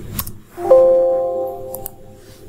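Windows system chime from a dialog box popping up: a single bell-like ding that starts suddenly and fades over about a second, with soft mouse clicks just before it and near the end.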